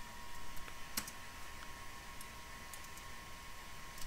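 A few scattered, faint clicks of a computer mouse and keyboard, the clearest about a second in, over faint room noise.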